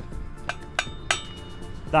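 The sharp edge of a steel bricklaying trowel striking an aluminium spirit level three times in quick succession, each hit a short metallic clink with a brief ring. This is the habit of tapping the level with the trowel's sharp side, which dents the level and can knock its vials out of true.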